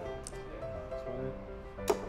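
Background music playing, with one sharp thud near the end as a dart strikes the dartboard.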